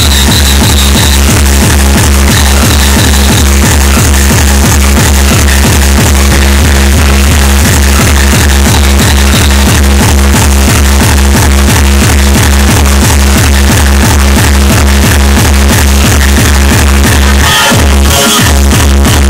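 Very loud electronic dance music played over a nightclub sound system, with a heavy, steady bass beat. The bass cuts out briefly near the end.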